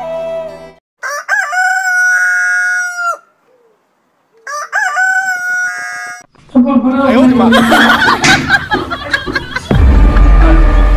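Rooster crowing twice, each crow rising then held long and level, the second shorter than the first. About six and a half seconds in, a loud, busy mix of sound takes over.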